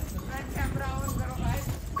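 Pony hooves clip-clopping at a walk on a paved mountain path, irregular knocks, with faint voices in the background.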